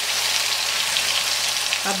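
Ground raw onion paste sizzling in hot oil in a kadai, just tipped in, with a steady crackling hiss.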